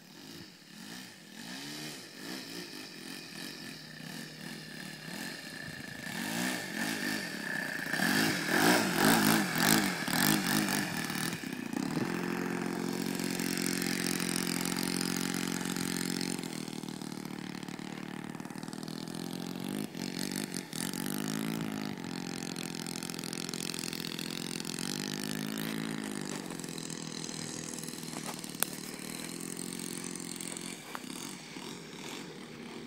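O.S. 52 four-stroke glow engine of an RC model plane running at low throttle as the plane taxis on grass, its pitch rising and falling with throttle blips. It grows louder over the first ten seconds as the plane comes close, then runs steadily with a few more short revs.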